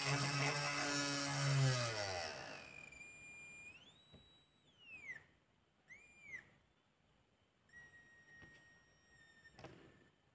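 Home-made single-coil brushless DC motor humming as it runs, its hum dropping in pitch and dying away about two seconds in as the motor slows. After that the coil, driven by its two-transistor oscillator, gives a faint high whine that glides up, holds and falls back as the frequency potentiometer is turned, then settles into a steady faint tone.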